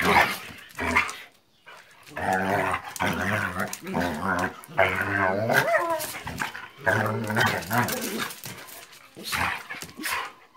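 Dogs play-fighting, with a run of long, low growls and some barks.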